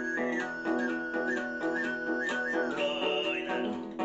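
Tuvan sygyt-style throat singing: a steady low drone with a whistle-like overtone melody stepping between pitches above it. The overtone leaps higher about three seconds in, then falls away. Under it a long-necked Tuvan lute is strummed in a steady rhythm.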